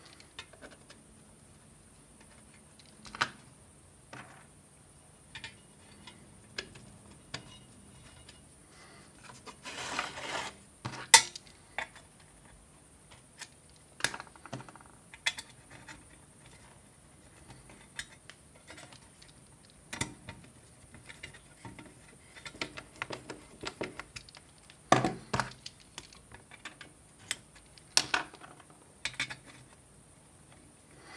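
Scattered clicks, taps and light knocks of hands handling an ATX power supply's cooling fan and its case section on a workbench, with a couple of brief rustling stretches.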